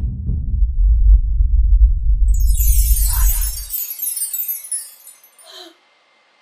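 Edited soundtrack: a long, loud low rumble that cuts off at about three and a half seconds, overlapped from about two seconds in by a high, glittering chime sweep that fades away.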